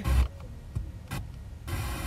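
Car radio being tuned to another station: a few short bursts of noise with quieter gaps between them as it passes between frequencies.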